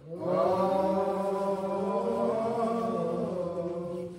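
Slow, drawn-out singing in a church service: one long held phrase that starts just after a short pause and wavers a little in pitch for nearly four seconds.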